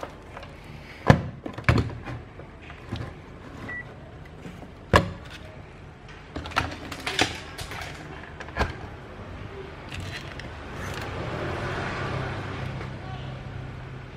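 Scattered knocks and clicks of bench handling, as a digital multimeter is set down on a concrete workbench and a mains plug is pushed into a power strip, over a low steady hum.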